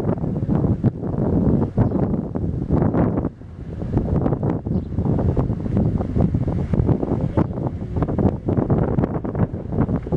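Wind buffeting the camera microphone: a gusty, rumbling noise that eases briefly about three seconds in.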